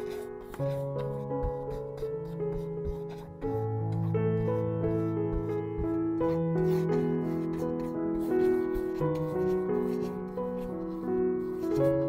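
Soft background piano music of slow, held notes. Faint rubbing of a paintbrush working acrylic paint across canvas sits underneath.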